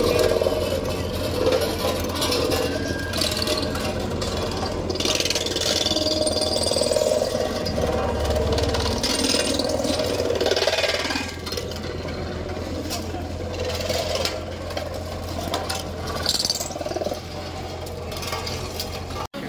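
JCB road roller's diesel engine running steadily as the roller creeps forward, a constant low hum with some rattling, over background voices.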